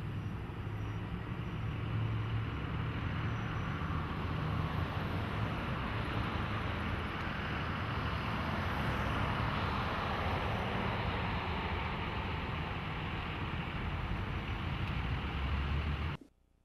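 Street traffic: the steady tyre and engine noise of vehicles driving past, swelling around the middle as a vehicle goes by, then easing off.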